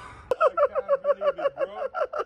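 A man laughing in quick, even bursts, starting about a third of a second in.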